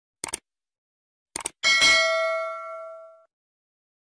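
Subscribe-button animation sound effect: a click near the start, a quick double click just over a second in, then a bright notification-bell ding that rings out and fades over about a second and a half.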